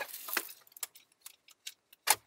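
Several light, sharp clicks at irregular intervals, after a brief rustle at the start.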